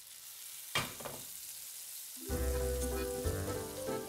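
Bacon frying, a steady sizzle with a sharper pop just under a second in. Music with held notes comes in over it a little past halfway.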